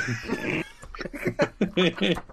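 A person's wordless vocal noise about half a second long, then brief murmured voices.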